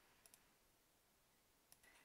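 Near silence, with a few faint clicks: a pair about a quarter-second in and another near the end.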